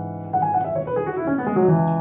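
Digital keyboard playing a piano sound: a chord struck just after the start, then a melody line stepping down a pentatonic scale over the held chord, landing on a new low chord near the end.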